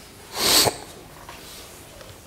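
A man sneezing once: a single short, sharp burst about half a second in.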